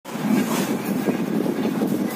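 Workshop machinery running, a steady rattling clatter.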